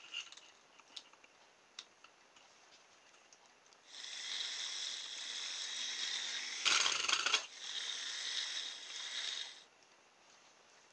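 Small battery-powered DC motor switched on about four seconds in, running with a steady high whine for about six seconds as it turns the axle through a rubber-band pulley drive, then switched off. A brief louder rattle comes in the middle of the run, and a few faint clicks of handling come before it.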